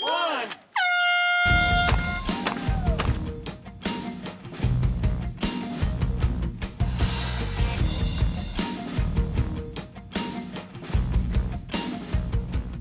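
A countdown ends and a horn sounds once, one steady note lasting about a second, signalling the start of the timed shooting. Then loud music with a heavy drum beat takes over.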